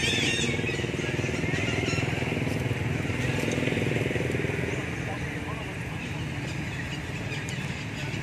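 Steady outdoor background noise: a continuous high hiss over a low rumble, with faint indistinct voices.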